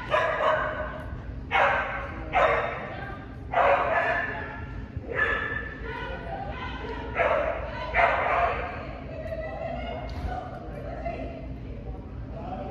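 A dog yipping and barking, about seven loud, high-pitched yips at uneven intervals, some close together in pairs.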